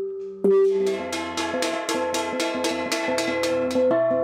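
Bronze gongs (Central Highlands chiêng) ringing. One gong's tone carries on, a stroke lands about half a second in, and then gongs of several pitches are struck in a fast, even beat of about five strokes a second, their tones ringing over one another.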